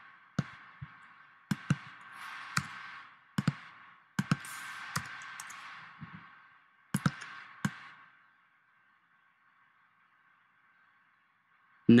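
Computer mouse clicks and keystrokes, about a dozen sharp separate clicks, some in quick pairs, over a faint hiss. The clicking stops about eight seconds in.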